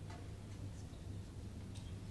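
Quiet room tone: a steady low hum with three faint, short ticks spread across the two seconds.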